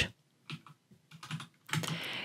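A few scattered keystrokes on a computer keyboard, typing out a terminal command.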